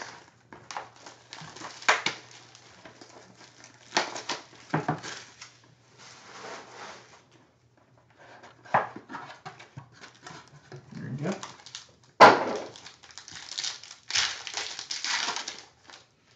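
A Strata football hobby box being torn open and a foil-wrapped card pack crinkled in the hands, in irregular ripping and rustling noises. The sharpest rip comes about twelve seconds in, followed by a longer spell of crinkling.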